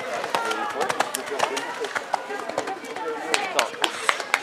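Indistinct voices of people talking, crossed by many sharp, irregular clicks and knocks that come more often in the second half.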